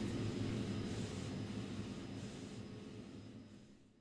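Steady mechanical hum and whir of room background noise, fading out gradually to silence by the end.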